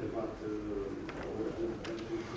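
Indistinct speech from a voice away from the microphone, talking without pause.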